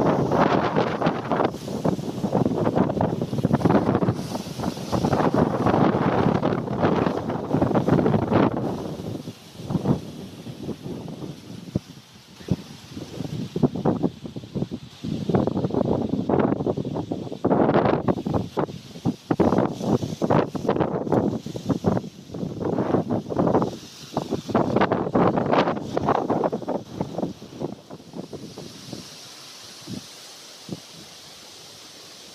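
Wind buffeting the microphone in uneven gusts, with quieter lulls about a third of the way in and near the end.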